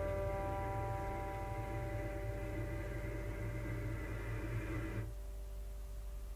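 The last chord of an acoustic guitar song ringing out and slowly fading. The ringing cuts off about five seconds in, leaving a faint low hum.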